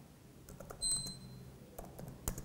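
A few sparse laptop keyboard key clicks as a command is typed, with a short high-pitched beep about a second in.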